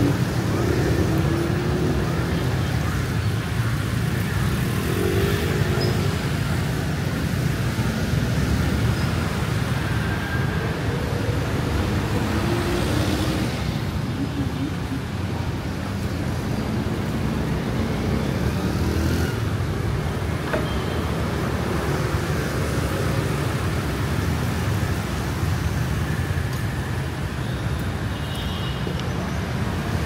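City street traffic: a steady, unbroken din of motorbikes and cars passing on the road.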